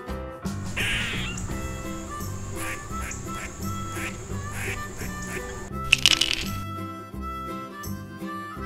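Light background music with a squirrel call sound effect over it: a short burst about a second in and a louder run of rapid chattering bursts about six seconds in.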